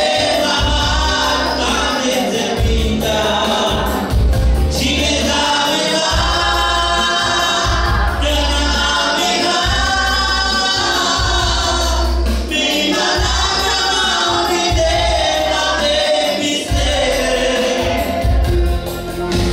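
Gospel worship song: a woman singing into a microphone over an electronic keyboard playing chords and a bass line with a steady beat, amplified through a PA.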